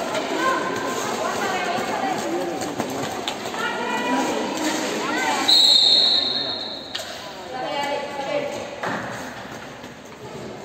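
Roller hockey referee's whistle: one long, steady, high blast about five and a half seconds in, stopping sharply after about a second and a half. Voices call out before and after it.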